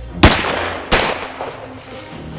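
Two handgun shots about two-thirds of a second apart, the first the louder, each with a short echoing tail.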